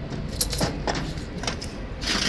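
Small pots and jars on a cabinet shelf clinking and knocking against each other and the shelf as a hand moves them, about four light clinks.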